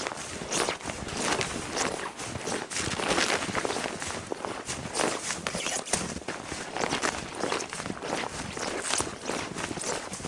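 Footsteps walking through fresh, deep snow, a steady pace of about two steps a second.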